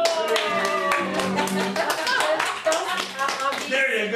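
The end of a song: a voice singing over fast, rhythmic hand clapping.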